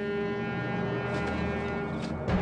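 Orchestral background score: a sustained low brass chord, held steady with a thicker low layer building under it.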